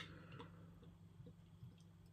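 Near silence as beer is poured slowly down the side of a tilted glass stein: a single light click at the start, then only a few faint soft ticks.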